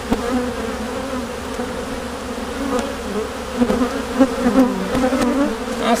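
Loud buzzing of many honeybees flying around an opened hive, the drone wavering in pitch as single bees pass close by. The bees are not agitated, just milling about looking for their entrance after the hive was rearranged.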